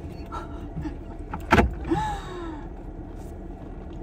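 Ram ProMaster van's engine idling, heard from inside the cab, with one sharp knock about one and a half seconds in.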